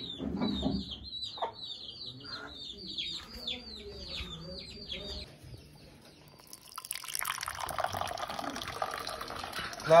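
Chicks peeping over and over, short high calls that slide downward, for about the first five seconds. After a brief lull, tea is poured from a metal teapot held high into a glass, a steady splashing stream from about seven seconds on.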